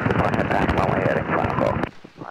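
Wind buffeting the microphone together with engine noise inside the open cockpit of a Piper J-3 Cub in flight, cutting off abruptly near the end.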